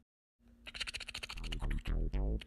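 A moment of dead silence, then a fast run of dry scratchy clicks over a low steady hum, building in loudness, with falling electronic sweeps coming in near the end.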